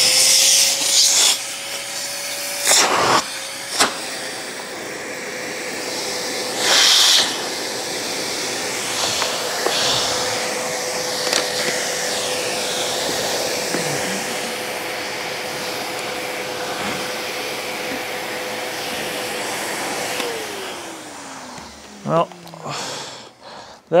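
Bosch Premium Electric Duo XXL (BSG81380UC) 1400-watt canister vacuum motor running with a steady hum and rush of air, quiet for a vacuum. About 20 seconds in it is switched off and its pitch slides down as the motor winds down, with brief handling knocks and rustles along the way.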